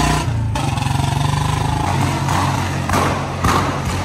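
Royal Enfield Bullet's single-cylinder engine and exhaust running under way with a steady low thump, with a few short noisy bursts about three seconds in.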